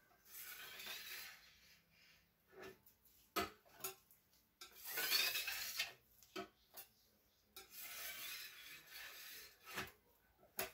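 A wide paintbrush sweeping through wet acrylic paint on a board in three long swishing strokes, with a few light taps between them.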